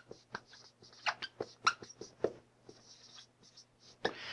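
Dry-erase marker writing on a whiteboard: a run of short scratchy strokes, with a few louder, sharper ones between about one and two and a half seconds in, over a faint steady room hum.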